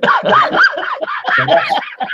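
A man laughing heartily in a rapid run of short, high-pitched bursts.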